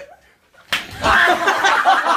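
A bat smacks into a thrown Scotch egg: one sharp slap about two-thirds of a second in, followed at once by loud laughing and shouting.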